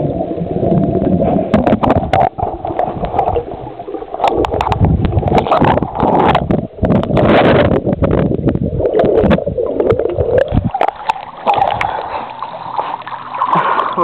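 Muffled underwater churning and bubbling of swimming-pool water, heard through a waterproof camera submerged in it, with many sharp knocks as a swimmer stirs the water and grabs the camera.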